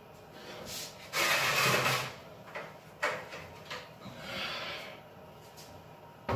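A blue plastic bucket, holding cold water, being handled and lifted: a scraping rush lasting about a second starting about a second in, then a few sharp knocks and a softer rub.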